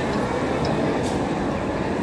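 Bhopal Shatabdi Express passenger coaches rolling slowly along the platform as the train arrives: a steady, fairly loud rumble of wheels on rail.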